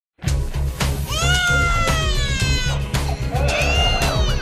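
Dramatic intro music with a heavy low beat, overlaid with a siren-like wail that rises about a second in and then slowly falls away; another wail rises near the end.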